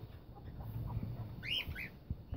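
Small parrots chirping in an aviary: two short rising chirps close together near the end, over a low background rumble.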